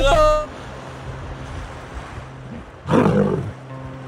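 River water splashing and churning as a hippo charges through it after a swimming lion, with a loud, short burst of sound about three seconds in.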